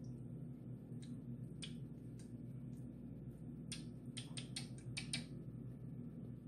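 Jojoba oil being dripped from a small bottle into a bowl of melted soap base: faint, sharp clicks, a few scattered at first and then a quick run of about seven in the space of a second, over a low steady hum.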